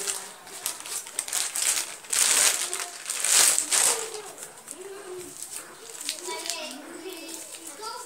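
Chewing-gum wrappers crinkling and rustling in the hands as pieces of gum are unwrapped, in short bursts, loudest in the middle.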